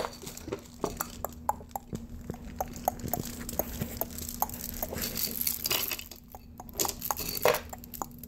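Irregular plastic clicks, taps and rattles from a baby's activity-centre toys as the baby bats and handles them on the tray.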